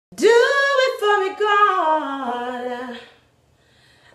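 A woman singing a cappella in a bathroom: one melodic phrase that starts high and steps downward over about three seconds, then stops, leaving a short pause.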